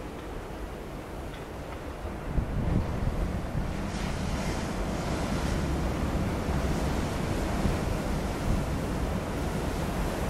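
Waves breaking on a pebble storm beach, with wind on the microphone. The surf swells about two and a half seconds in, and a brighter hiss follows from about four seconds.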